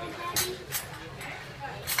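Faint voices of people talking, with sharp clicks about half a second in, again shortly after, and once more near the end, over a steady low hum.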